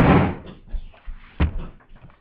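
A loud rustling scrape that fades within half a second, then a single sharp knock about a second and a half in.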